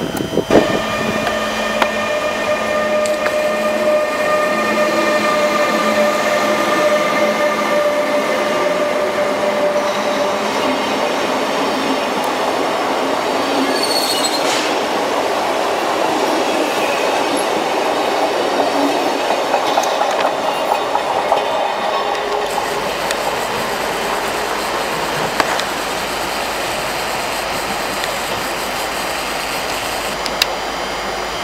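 Electric passenger trains rolling slowly through a station, with clattering wheels on the rails. In the first part the electric locomotive gives a steady whine of held tones, and about halfway through there is a brief high wheel squeal.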